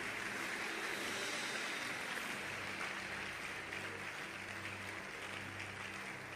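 A congregation applauding steadily, easing slightly toward the end, with a faint low hum underneath.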